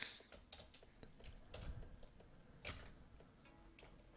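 Faint, scattered keystrokes on a computer keyboard, with a couple of louder key presses in the middle.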